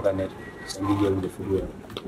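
A man's voice speaking in short phrases, low-pitched.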